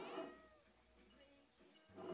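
A cat's short, faint meow, falling in pitch, right at the start, followed by near silence.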